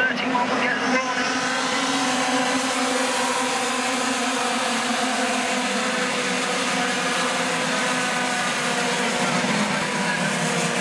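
A pack of racing karts' small two-stroke engines running together at high revs, many engine notes overlapping in a continuous drone whose pitches drift up and down as the karts go through the corners.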